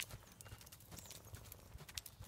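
Faint, irregular hoofbeats of a young horse walking on soft dirt.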